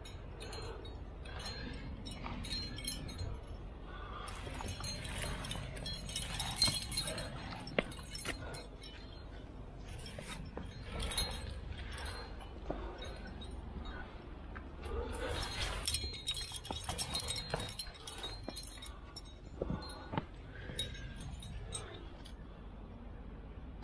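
Metal trad climbing gear on the harness, carabiners and cams, clinking and jangling irregularly as the climber moves up a crack. Scuffs of gloved hands and shoes on the granite come in between. The clinking is busiest about six seconds in and again from about fifteen to eighteen seconds.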